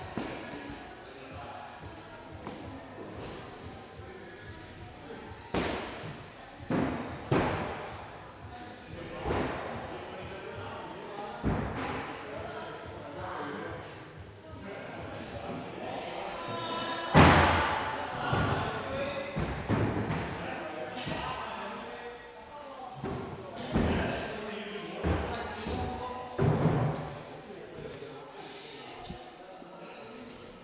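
Weights and equipment dropping onto a gym floor in a large hall: irregular thuds and slams every second or two, the loudest about two-thirds of the way through. Background music and voices run underneath.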